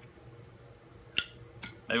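A metal lighter being handled: one sharp metallic clink with a short ringing about a second in, then a softer click.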